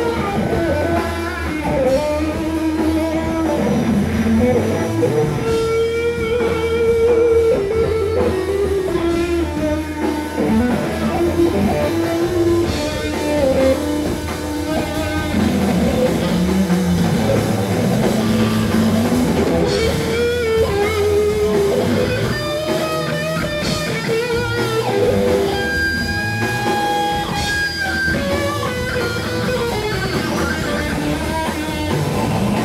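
Live psychedelic rock: an electric guitar plays a lead with long, bending, wavering notes over a drum kit, heard from within the audience.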